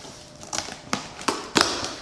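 Cardboard shipping box being handled: four or five sharp knocks and scrapes of cardboard, the last one longer.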